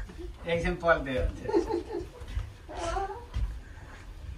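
A person's voice and laughter, with high, gliding vocal sounds in two stretches, the second shorter and near the end, over a low rumble.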